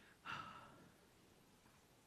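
A man sighs once, a short breath out that fades within about half a second; otherwise near silence.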